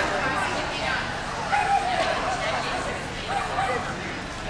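A dog barking in short calls over the steady chatter of a crowd.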